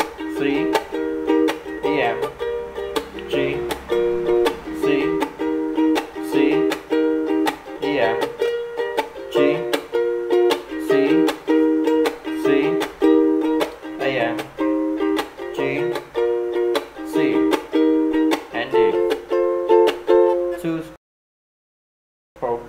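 Ukulele strummed in a steady down-up pattern with percussive taps, working through an Em–G–C–Am–D chord progression. The playing cuts off suddenly about a second before the end.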